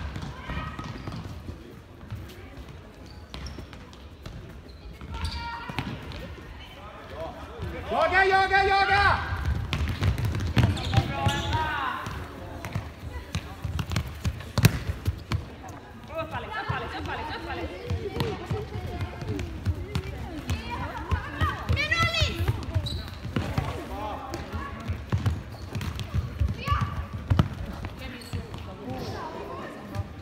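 Futsal in play: a ball being kicked and bouncing on a sports-hall floor, with running footsteps and young players shouting to each other. A long high-pitched shout about eight seconds in is the loudest sound, and a single sharp knock rings out about halfway through.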